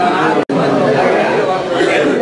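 Overlapping chatter of many men talking at once in a room, cut off completely for an instant about half a second in.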